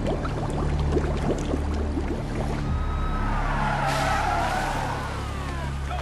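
Film sound effects: water bubbling, then from about halfway a vehicle skidding, a high wavering screech that dips, rises and glides down, over a low rumble.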